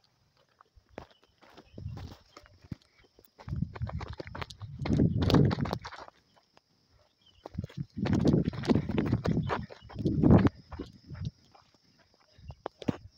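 Footsteps scuffing and crunching on a dry dirt path strewn with small stones, in two stretches of quick steps.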